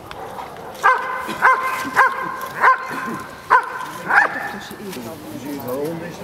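German Shepherd barking at the protection helper while guarding him after letting go of the bite sleeve: six sharp, loud barks at roughly half-second to one-second intervals.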